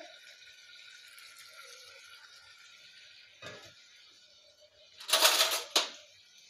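Wet soya chunks being squeezed out by hand over a steel bowl and dropped into a pressure cooker: a faint hiss, a short knock about three and a half seconds in, and a loud splashing hiss about a second long near the end.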